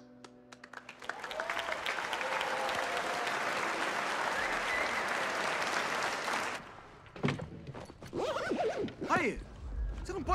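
Audience applauding in a room: a few scattered claps at first, swelling within a second into full, steady applause that cuts off abruptly about six and a half seconds in.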